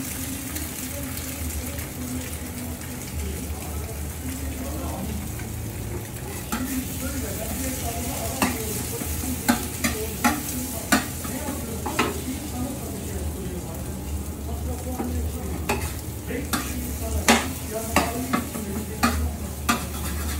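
Eggs sizzling on a flat steel griddle, with a metal spatula scraping and tapping on the plate as they are turned and chopped. The sharp taps come irregularly from about six seconds in.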